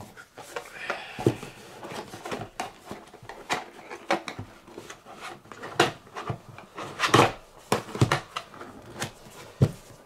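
Cardboard deck box being handled: paperboard sliding, scraping and tapping in scattered short knocks, a few louder taps in the second half.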